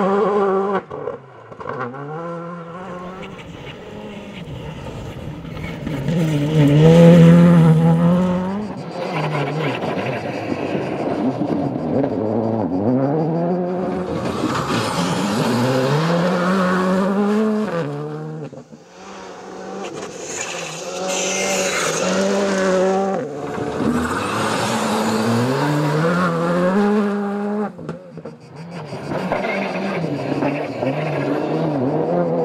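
Škoda Fabia Rally2 cars at full attack on a gravel stage. The engines rev up and drop back repeatedly through gear changes and lifts, over several separate passes, with the loudest pass about seven seconds in.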